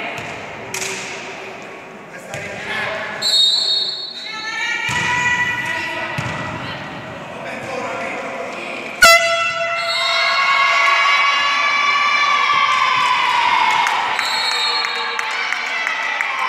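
Volleyball rally echoing in a sports hall: ball strikes and players' shouts, then a sharp loud hit about nine seconds in. Loud, sustained shouting and cheering follows as the point is won.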